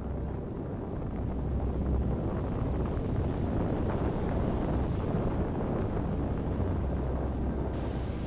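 Steady, low rushing roar of wind, heaviest in the deep bass, with a brighter hiss coming in near the end.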